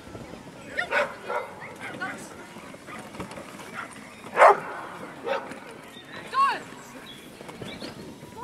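A dog barking in a handful of short, separate barks, the loudest about four and a half seconds in.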